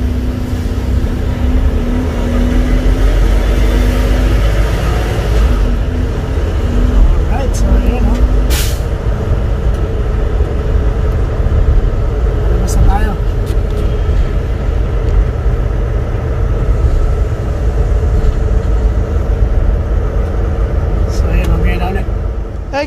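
Semi-truck engine running under way as the truck pulls out, heard from inside the cab as a loud, steady low rumble.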